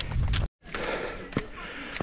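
Low wind rumble on the microphone that cuts off abruptly, followed by a runner's heavy breathing and a single sharp tap of a footstep on bare rock.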